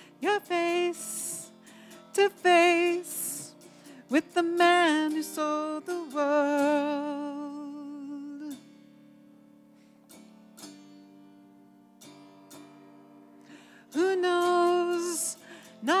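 A woman singing with a wide vibrato to her own strummed autoharp chords. About halfway through the voice stops and the autoharp carries on alone, softer, for several seconds before the singing comes back near the end.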